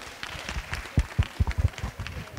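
Light, scattered hand clapping from a small group, a few irregular claps rather than full applause.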